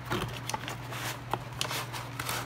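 Corrugated cardboard box being opened by hand and a ceramic plate slid out of it: rustling and scraping, with a few sharp little clicks.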